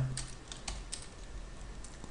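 A few quiet, scattered keystrokes on a computer keyboard.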